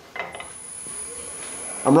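Wood lathe switched on with a click, spinning the bowl up to about 900 rpm: a steady high whine and a lower motor hum rising in pitch as it gathers speed.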